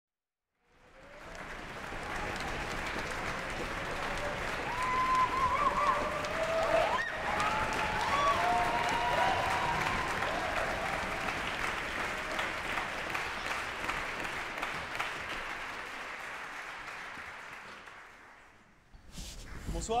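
Concert-hall audience applauding, with a few voices calling out in the middle; the applause starts about a second in and dies away near the end.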